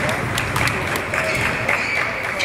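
Indoor basketball gym ambience: indistinct voices and scattered sharp claps and knocks echoing in the hall, with a high steady tone that comes and goes.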